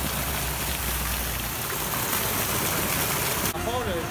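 A steady hiss of falling, splashing water that cuts off abruptly about three and a half seconds in.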